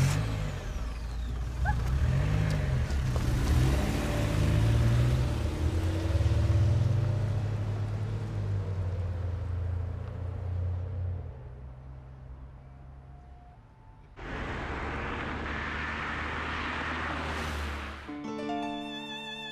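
A car engine revving as the car pulls away, its pitch rising and falling over the first several seconds, then fading as it drives off. About fourteen seconds in, a steady rush of engine and road noise begins, as heard inside a moving car.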